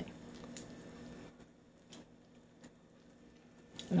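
Quiet small-room tone with a few faint, light ticks scattered through it.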